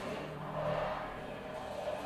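Sustained drone of a tam-tam's resonance driven by acoustic feedback, blended with harmonics from a Yamaha SLB100 silent bass's prepared strings. Several steady tones sound together, swelling about half a second in and easing off again.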